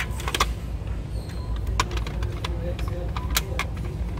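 Glass nail polish bottles clinking against each other and the plastic shelf as they are picked up and set down: a handful of sharp, separate clicks over a low steady store hum.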